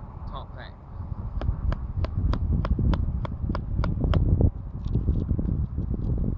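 A can of Grizzly long-cut wintergreen dip being packed by hand: about a dozen quick, even taps, roughly four a second, starting about a second and a half in and stopping a little after four seconds.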